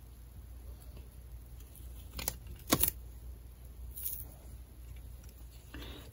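Faint handling of double-sided tape being pressed along the edge of a mask, with two short clicks about halfway through, the second the louder, and a lighter tick a little later, over a low steady hum.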